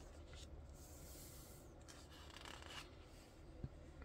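Faint rubbing of fingers and hands against the paper pages of a large hardcover comic book, with a soft tap near the end.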